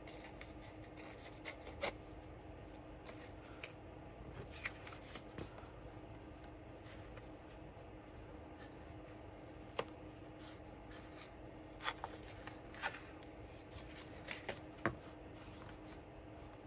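Patterned scrapbook paper rustling and crinkling as it is handled and folded by hand, with a few sharp crackles. A faint steady hum runs underneath.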